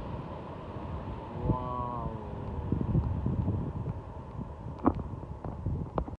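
Airbus A380 jet airliner's engine noise after touchdown, a broad rumble and hiss that slowly fades as the aircraft rolls away down the runway, with wind on the microphone.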